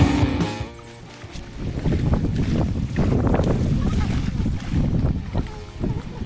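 Background rock music ends within the first second, then wind buffets an outdoor camera microphone in uneven gusts, with indistinct voices mixed in.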